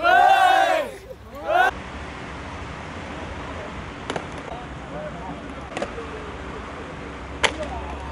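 Young men yelling and cheering for about a second and a half. Then skateboard decks clack sharply on the pavement three times, about a second and a half to two seconds apart, over a low steady hum and faint voices.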